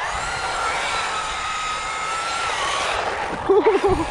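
Brushless electric motor of a Traxxas Rustler 4x4 RC truck whining at a steady high pitch as it drives on asphalt, then dropping away about three seconds in as it slows. A person's voice breaks in briefly and loudly just before the end.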